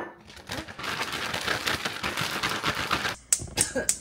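Plastic zip-top bag rustling and rattling for about three seconds as hairtail pieces are coated in frying mix inside it. A few sharp clicks follow near the end.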